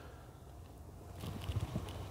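Quiet pickup-cab background: a low steady hum, with faint rustles and small clicks in the second half.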